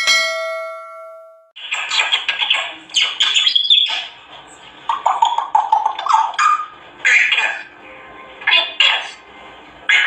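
A bell-like ding rings and fades out over about a second and a half. Then an African grey parrot calls in a run of harsh squawks and whistle-like sounds, coming in bursts with short pauses between them.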